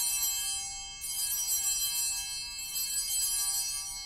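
Altar bells rung at the elevation of the host during the consecration, a cluster of clear high ringing tones. They are rung again about a second in and again at about two and a half seconds, ringing on between the rings.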